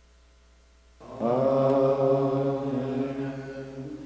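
A man's voice chanting a liturgical response: after about a second of near silence, one long held note with a slight rise at its start.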